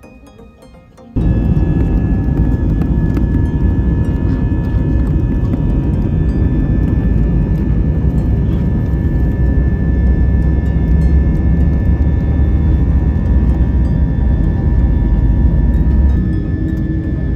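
An airliner's wing-mounted jet engines at takeoff power during the takeoff roll, heard from inside the cabin: a loud, steady low rumble with a faint high whine, starting suddenly about a second in.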